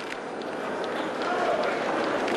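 Indistinct crowd chatter with many scattered short clicks and knocks, like footsteps and movement among a large gathering.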